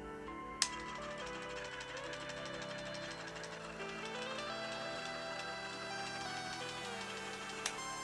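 Quiet background music with held notes that change pitch in steps. Under it runs a faint, rapid mechanical ticking from the small gearmotor of an air-freshener dispenser driving a hacksaw blade. There is a sharp click about half a second in and a softer one near the end.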